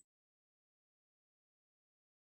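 Dead silence: the audio cuts off abruptly at the very start and nothing at all is heard.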